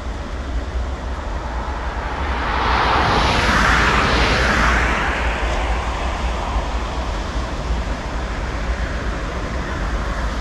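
A car passing by on the road: the noise of its tyres and engine swells to its loudest a few seconds in, then fades away.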